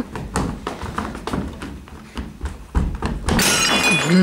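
Quick footsteps on a wooden stage floor, then a heavy thud near three seconds in and a large Sèvres porcelain vase shattering on the floor, its shards crashing and ringing briefly.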